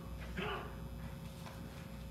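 A quiet church room with a faint steady hum, and one short vocal sound from a person in the room about half a second in.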